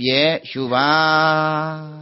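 A Buddhist monk's voice chanting in recitation style: a short falling syllable, then one long steady note held for about a second and a half that fades out at the end.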